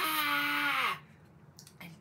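A woman's deliberate, drawn-out yell of "ah!", held for about a second and falling in pitch as it cuts off.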